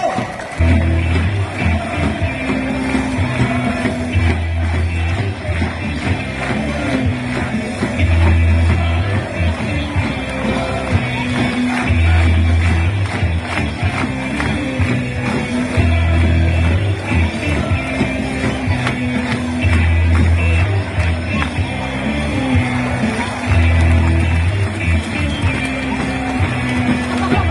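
Background music with a steady beat and a bass phrase that repeats about every four seconds.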